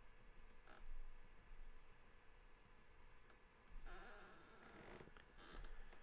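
Near silence, broken by a few faint, brief scratches of a pen nib on drawing paper as small marks are inked: one short scratch under a second in, a longer one of about a second beginning about four seconds in, and a short one near the end.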